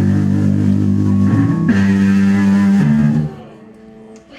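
Live rock band's amplified electric guitars holding long ringing chords, changing chord twice, then stopping abruptly a little over three seconds in.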